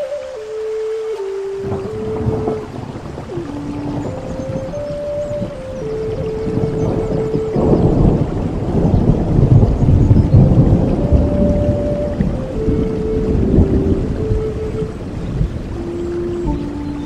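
Native American flute playing a slow melody of held notes over steady rain, with a long rumble of thunder that comes in about two seconds in and is loudest in the middle.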